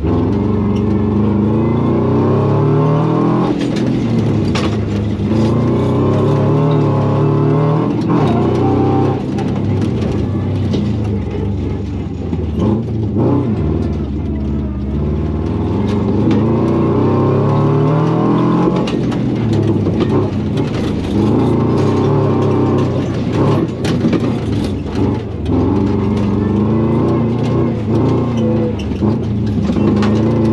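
Rally-prepared Subaru's flat-four engine heard from inside the cabin, driven hard with the revs climbing and dropping over and over every few seconds, with scattered sharp knocks and clatter over the engine.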